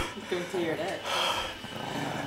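A Chihuahua growling in short, uneven snatches close to the microphone, with a breathy rush about a second in.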